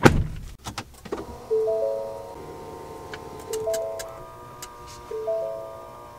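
A click as the push-button power start is pressed, then music with held, stepping notes comes on from the F-150 Lightning's Bang & Olufsen sound system as the truck powers up.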